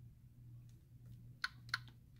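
Two sharp clicks about a third of a second apart, over a faint steady low hum.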